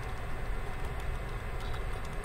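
Computer keyboard typing, a few faint key clicks over a steady low background hum.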